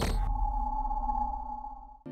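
Logo-sting sound effect: a crash cuts off a moment in, leaving a single ringing tone over a low rumble that slowly fades away.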